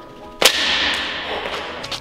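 One sharp snap of a heavy rubber resistance band, followed by a hissing tail that fades over about a second and a half.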